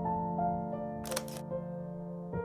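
Soft background music with sustained notes, over which a camera shutter fires once about a second in, a short double click of a Leica M11's shutter.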